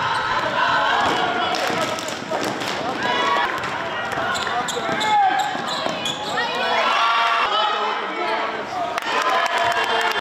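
Basketball dribbled and bouncing on a gym's hardwood floor, mixed with overlapping shouts and chatter from players and spectators.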